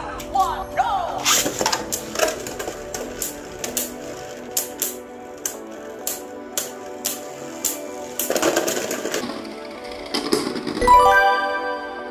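Beyblade Burst spinning tops clashing in a plastic stadium: sharp clicks of repeated collisions over background music, with a noisier stretch about two-thirds of the way through, as one top bursts apart. A rising run of chime-like tones plays near the end.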